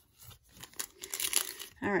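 Crinkling of a sealed 2021 Elite football card pack's wrapper as it is picked up and handled: a rustle of crackles that builds over about a second.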